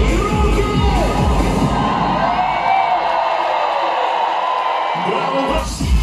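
Live pop band played through an arena PA and heard from the crowd: a heavy beat for the first two seconds, then the bass drops out and the crowd cheers and whoops, until a new loud beat kicks in near the end.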